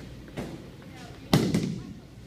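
A single loud, startling bang a little over a second in, with a short echoing decay: a heavy impact in the bowling alley.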